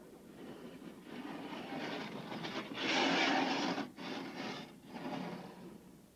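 Two-man bobsled running down the ice track, its steel runners giving a rushing rumble that builds, is loudest about three seconds in, and fades away before the end.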